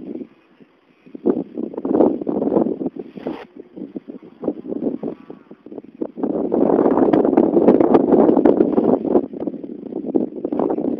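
Wind buffeting the microphone while riding a bicycle, a rough rumbling rush that comes and goes in gusts, drops out briefly about a second in, and is strongest and steadiest through the second half.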